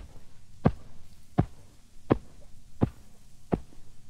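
Record sound effect of eiderdown feather beds being piled one on another: six evenly spaced thuds, about one every 0.7 seconds.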